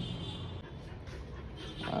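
A dog panting softly, with a faint steady hum underneath.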